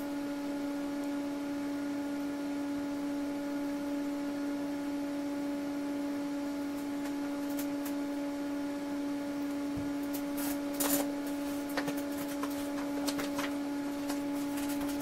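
Steady electrical hum with a row of overtones from running bench electronics, with a few light clicks about ten to thirteen seconds in.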